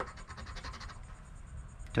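A coin scratching the coating off a scratch-off lottery ticket in a run of rapid, faint strokes.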